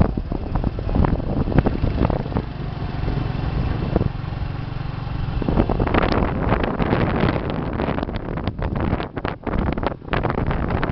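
A vehicle's engine running steadily on the move, a low rumble, with wind buffeting the microphone; the wind noise grows heavier and gustier from about six seconds in.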